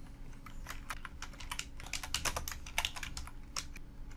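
Typing on a computer keyboard: a quick, uneven run of keystrokes as a short phrase of text is entered.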